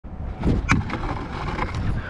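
Kick scooter wheels rolling over rough concrete, a knock as it pops onto a painted ledge under a second in, then the scooter grinding along the ledge with a steady scrape.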